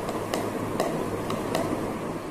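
Light handling taps while a paper-covered cardboard box is glued: four short sharp ticks spread over about two seconds, as a plastic glue spreader and the box are handled.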